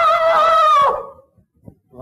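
A male Sindhi devotional singer holding one long, high note with a slight waver, which trails off and dips about a second in, leaving near quiet.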